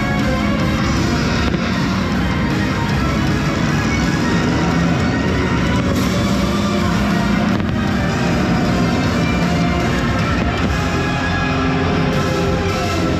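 Loud orchestral show music playing over outdoor loudspeakers, with fireworks bursting over it and a few sharper bangs standing out.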